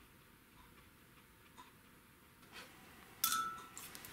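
Near silence, then about three seconds in a paintbrush clinks once against the water jar as it is rinsed, leaving a short high ringing tone.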